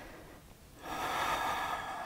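A woman's deep breath, drawn through the nose as a steady airy rush that starts about a second in, after a near-silent moment.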